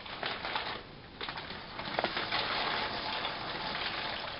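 A plastic bag of dry penne rigate crinkling as the pasta is poured out, the dry pasta tumbling into the pot with many small clicks.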